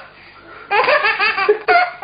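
A man laughing hard: after a quieter start, a rapid run of laughs begins a little under a second in and lasts about a second.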